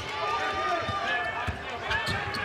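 Arena game sound: crowd voices, with a basketball dribbled on the hardwood court a few times.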